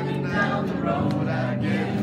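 A song sung live over musical accompaniment, the voice holding long notes that change pitch every half second or so.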